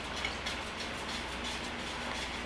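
A hand whisk stirring batter in a mixing bowl as wet ingredients are poured in: faint, irregular light ticking and scraping of the whisk against the bowl over a steady low hiss.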